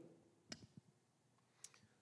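Near silence, with two faint, short clicks of a handheld microphone being handled, about half a second in and again near the end.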